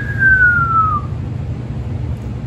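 Siren wailing: a single tone that falls slowly in pitch and fades out about a second in, over a steady low rumble.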